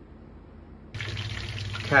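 Pork belly deep-frying in peanut oil in a large stockpot: a dense, steady sizzle of bubbling oil that starts abruptly about a second in, with a steady low hum underneath.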